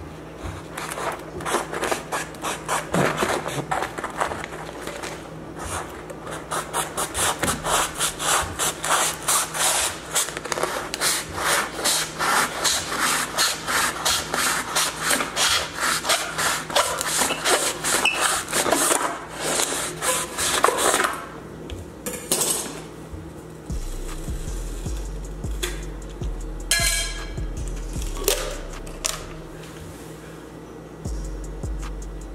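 A big knife sawing back and forth through the cardboard tube of a Pringles can, with quick even rasping strokes about three a second that stop after about twenty seconds. A few scattered knocks and handling sounds follow as the cut can is handled.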